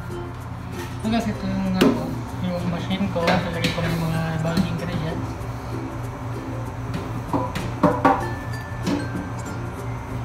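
Background music runs throughout, with a few sharp metallic clinks of a stainless steel pan against a steel mixing bowl.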